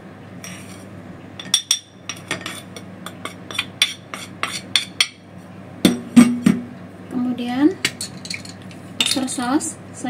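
A spoon clicking and scraping against porcelain as seasonings are tipped from a plate into a small porcelain bowl, with rapid light taps, then a few louder knocks about six seconds in. Short squeaky sounds follow around seven seconds and near the end as a sauce bottle is uncapped.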